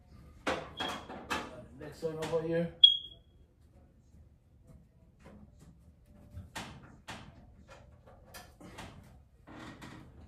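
Sharp metallic clicks and taps from a screwdriver working on the sheet-metal top of a clothes dryer, with a short, high ringing ping just before three seconds in. A brief wordless grunt or hum from the worker comes around two seconds in.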